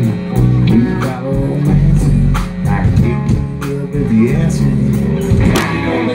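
Live rock band playing amplified over a PA: electric guitars and bass guitar over a drum kit beating steadily.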